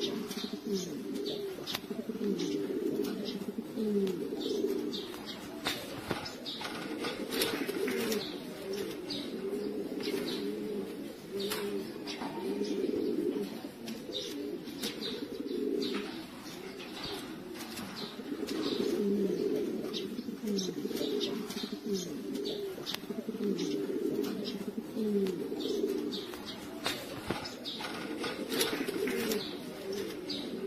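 Several domestic pigeons cooing continuously and overlapping, a steady chorus of low rolling coos, with frequent short clicks throughout.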